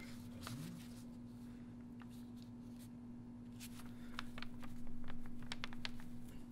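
Small quick taps and rustles of a carved stone seal being inked with cinnabar seal paste and set onto paper, starting about three and a half seconds in after a quiet stretch. A steady low hum runs underneath.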